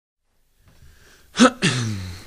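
A man's voice: silence, then one short sharp burst of breath and voice with a quickly falling pitch, like a sneeze, followed at once by a drawn-out voiced sound as he starts to speak.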